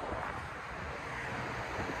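Wind buffeting the microphone: a steady, fairly quiet rushing noise with a fluttering low rumble.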